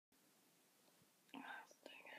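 A person whispering a few words, starting a little past halfway through, over a faint steady hiss.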